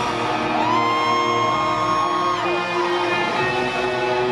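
Rock band playing live in a hall: electric guitars ringing out sustained chords, with a high held note that slides up, holds for about two seconds and drops away.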